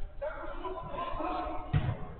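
Players' voices calling out across a covered artificial-turf football pitch, with a single hard thump of the football near the end.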